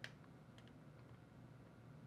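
Near silence, with a few faint clicks as a plastic model car body is flexed in the hands.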